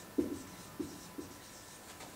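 Whiteboard marker writing on a whiteboard: three short strokes as the word is written, the first the loudest.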